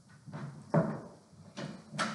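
A few knocks and clunks of a metal folding chair and small table being handled and shifted, the loudest about three-quarters of a second in.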